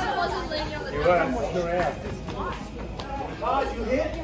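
Chatter of voices, with high-pitched children's voices among them, talking over one another in a large hall.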